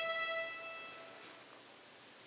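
String orchestra's closing held note, one high sustained pitch, dying away about a second in as the piece ends.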